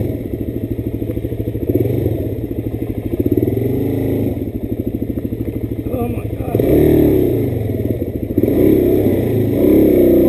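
Single-cylinder supermoto engine running on trail: it chugs at low revs with a clear pulsing beat, then picks up in pitch and loudness under throttle a little under 2 seconds in, again about two-thirds through, and once more near the end.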